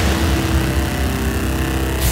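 Editing sound effect: a steady deep rumble under a loud hiss that starts suddenly and cuts off at the end, the kind of whoosh-rumble laid under a transition between shots.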